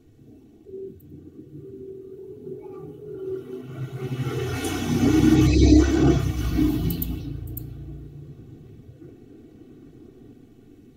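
A low rumble with a fainter higher hum that swells to its loudest about halfway through and then fades away.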